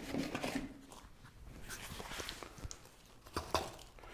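Compost being scooped and tipped into a terracotta pot with a hand scoop: soft rustling of soil with scattered taps and clicks.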